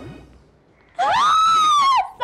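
A woman's high-pitched squeal of delight: one held note about a second long, starting about halfway in, rising slightly and then easing down.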